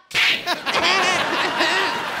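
A sharp whack from a swung walking stick right at the start, followed by a continuous noisy stretch with voices under it.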